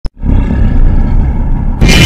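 A loud, deep rumbling sound effect, with a sudden blast about two seconds in.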